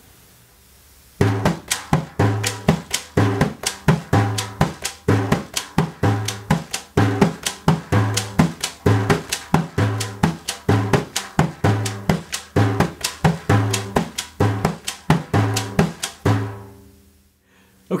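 Cooperman 99 Slapback, a tunable frame drum with loose shot inside, played lap style in the Maqsoum rhythm: deep dum bass strokes and pa slaps, with chick edge strikes filling the gaps between the rhythm cells. The strokes start about a second in, keep an even tempo and stop a little before the end.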